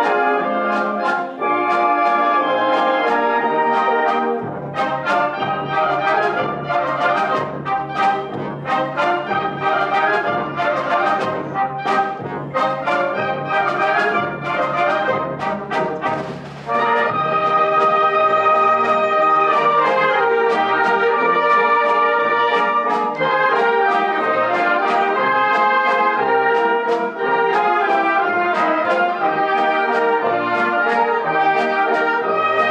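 Live concert band playing: clarinets, saxophones and brass together, with regular percussion strokes. About four seconds in the band drops back a little over a low bass line, and about seventeen seconds in it comes back louder with long held chords.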